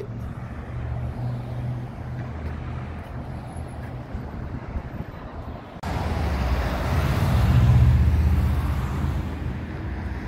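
Road traffic at a city intersection: a steady low engine and tyre rumble. After an abrupt change a little past halfway, a passing vehicle's rumble swells to its loudest about two seconds later and then fades.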